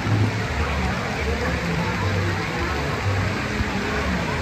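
Steady rush of water running down a shallow children's water slide, with low background music underneath.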